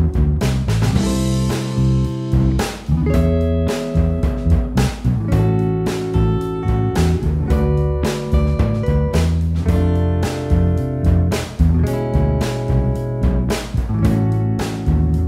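Playback of a band mix: a drum track with a steady beat, direct-input electric bass and a clean electric guitar recorded direct into the interface without an amp simulator, its reverb EQ'd darker.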